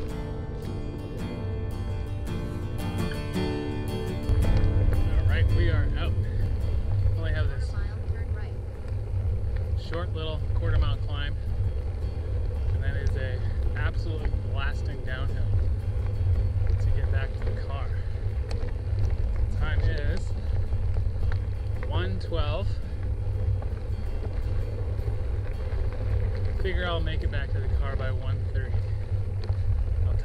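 Bicycle tyres rolling on a gravel forest road, under a heavy low rumble of wind on the camera microphone. Guitar music ends about four seconds in.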